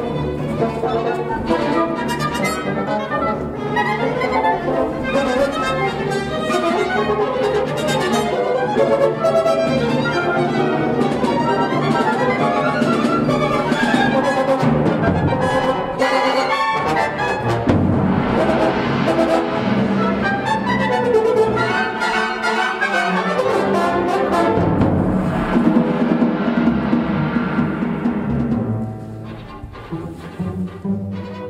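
Orchestral music, with brass and timpani prominent, playing continuously and dropping in level near the end.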